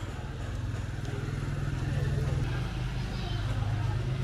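An engine running steadily, a low hum that grows a little louder about two seconds in.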